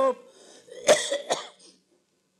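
A man coughing: two sharp coughs about half a second apart, the first the louder.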